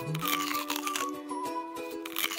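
Repeated sharp cracks and crunching of hard chocolate being bitten and chewed, over background music.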